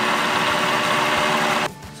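Braun MultiQuick 7 hand blender motor spinning the slicing disc in its food-processor bowl with no food in it: a steady, loud whir with a hum in it that cuts off sharply a little before the end.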